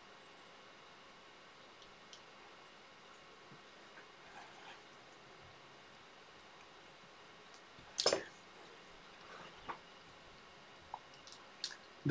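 Quiet room with faint small clicks and rustles from hands handling a feather wing and the fly in the vise, and one short, louder noise about eight seconds in.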